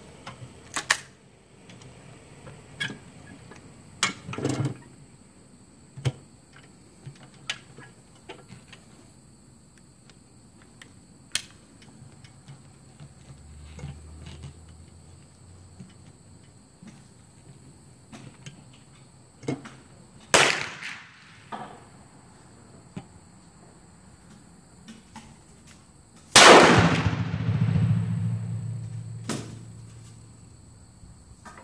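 Hatfield break-action single-shot 12-gauge shotgun fired once near the end, firing a 1-ounce rifled slug: one loud shot that trails off over about three seconds. Earlier there are a few sharp clicks from handling the gun.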